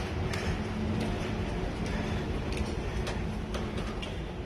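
Steady room tone of a large indoor space: a low, even hum with a few faint ticks scattered through it.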